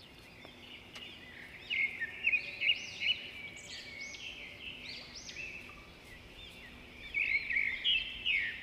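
Birds calling in the trees: quick looping chirps in clusters, loudest about two to three seconds in and again near the end.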